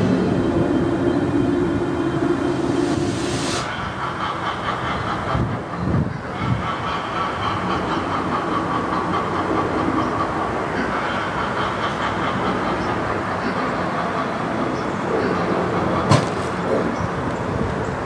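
Sound effect from a Halloween electric-chair prop: a steady, dense crackling and buzzing noise. A few low thumps come about six seconds in and a sharp knock near the end.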